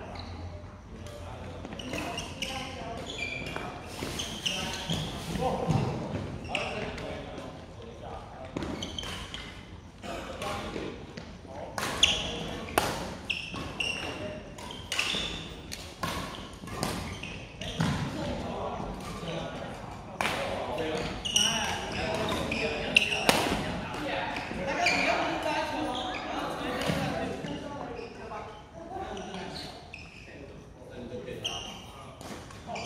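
Badminton rally in a large hall, with sharp racket strikes on a shuttlecock and players' footsteps on the court, the hall echoing. A few hits stand out loudly. Voices talk throughout.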